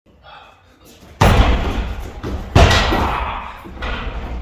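Two kicks landing on a hanging heavy bag, about a second and a half apart, each a loud smack with a long fading trail.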